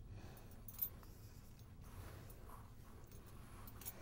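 Faint strokes of a paintbrush spreading wet glaze over a silver-leafed lamp base, with one small tap a little under a second in.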